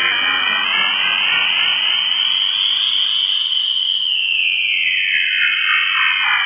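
Electronic noise music: a steady, high buzzing tone held throughout, under a stack of tones that glide slowly upward to meet it and then begin to sweep back down about four seconds in.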